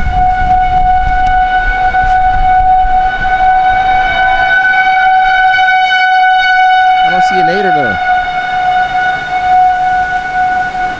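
Outdoor civil-defense warning siren sounding one steady, unwavering tone, loud throughout. Wind rumbles on the microphone for the first few seconds.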